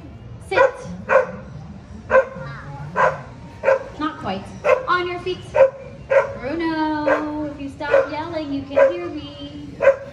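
A dog barking over and over at its trainer's commands, about every half second, with one drawn-out whining bark lasting about a second near the middle; barking that the trainer calls arguing at first.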